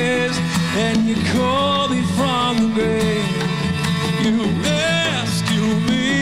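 A contemporary worship song performed live: a man singing lead with strummed acoustic guitar and conga drums.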